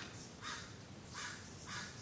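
Faint bird calls in the background: a few short calls, roughly half a second apart, over quiet room tone.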